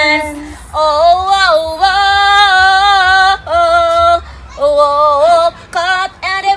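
Women singing a cappella, a melody of held and sliding notes in short phrases with brief breaks between them.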